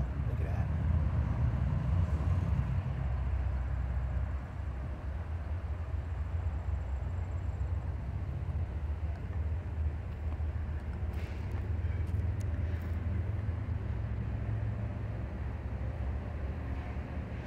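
Low, steady rumble of distant diesel locomotives on the approaching freight train, heard across open ground.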